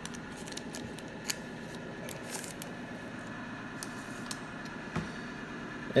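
Soft crinkling of a foil trading-card booster pack and the cards inside sliding out as it is opened by hand. A few faint crackles over a steady low hiss.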